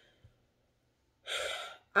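A woman drawing in one sharp, audible breath, about half a second long, after a second of near silence.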